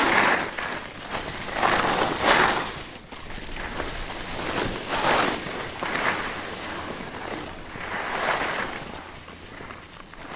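Skis scraping and carving over packed, chopped-up piste snow, a hiss that swells with each turn every second or two, with wind rushing over the microphone.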